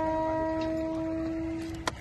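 Conch shell (shankh) blown in one long steady note that stops near the end with a sharp click.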